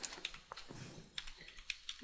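Typing on a computer keyboard: a quiet run of irregularly spaced keystrokes.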